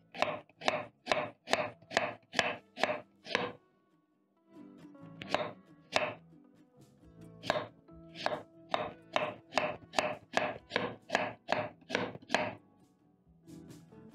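Chef's knife slicing raw potatoes into rings on a wooden cutting board: quick, regular chops about two to three a second, with a brief pause about four seconds in. Soft background music comes in under the chopping after the pause.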